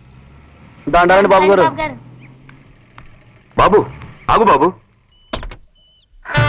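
A voice calls out loudly three times, one of the calls "Babu!", over the faint low hum of a car engine running. A few soft clicks come near the end.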